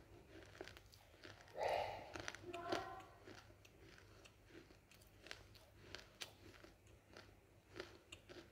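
A person chewing something crunchy with closed lips close to the microphone: a steady run of small crunches and wet mouth clicks, with a louder crunch about one and a half seconds in.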